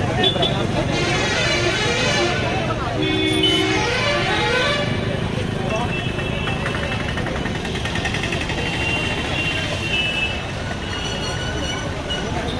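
Busy road traffic at close range: engines and tyres passing, with vehicle horns tooting several times, one clear toot about three seconds in.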